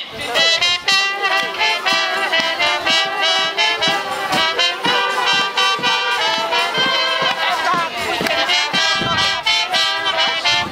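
Brass band music with trumpets and a steady beat, about three beats a second.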